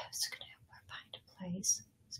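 A woman whispering quietly under her breath: short, breathy, hushed fragments of words.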